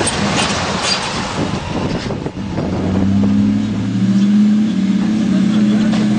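Ram 2500 pickup's engine running under load. The first couple of seconds are rough noise with scattered knocks, like tyres grinding over rock. About halfway in, a steady engine drone takes over.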